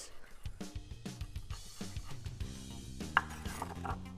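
Background music with drums, and a kitchen knife chopping sun-dried tomatoes on a wooden cutting board in a run of quick, irregular strikes.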